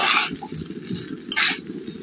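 Metal spatula stirring and tossing fried rice in an aluminium kadai, scraping against the pan at the start and again about a second and a half in, over a low steady rush.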